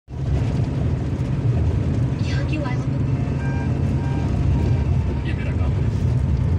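Steady low rumble of a running vehicle, with faint voices briefly about two seconds in and again near the end.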